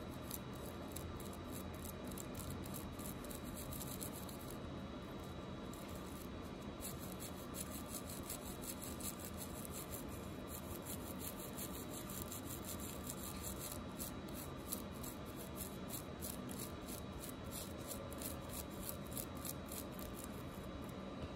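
Toothbrush bristles scrubbing a toothpaste-coated gold diamond ring in quick, repeated back-and-forth strokes, with a short pause about five seconds in.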